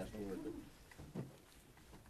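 The tail of a spoken phrase, then one short low murmur about a second in, over faint room tone in a meeting room.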